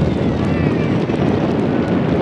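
Wind buffeting a camcorder microphone: a loud, steady low rumble.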